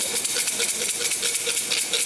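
Thai fortune sticks (siam si) clattering rapidly inside a cylinder as it is shaken, a fast, continuous rattle.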